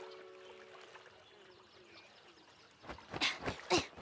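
A held music chord dies away, then near the end a few short swishing and splashing strokes come as a cartoon goose flaps down onto a pond.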